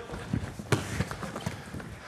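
Light knocks of a football being dribbled and tapped along the floor, mixed with footsteps; one sharper knock comes about three quarters of a second in.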